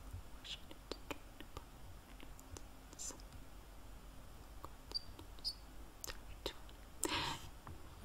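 A quiet room with scattered faint clicks and ticks, and a short soft breath about seven seconds in.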